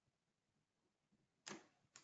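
Near silence (room tone) broken by a computer mouse button click about one and a half seconds in, with a second, smaller click at the very end.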